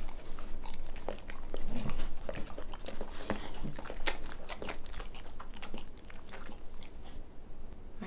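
Two senior staffy-mix dogs chewing pieces of burger patty and licking their lips, a close run of wet mouth clicks and smacks that thins out near the end.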